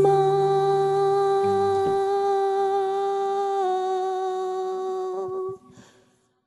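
The end of a song: one long held vocal note, steady in pitch with a slight step down about three and a half seconds in, dying away about five and a half seconds in.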